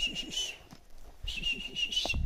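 A person whistling two long, steady high notes, calling a dog.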